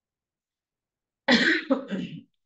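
A person coughs, starting suddenly a little past halfway through after a stretch of complete silence.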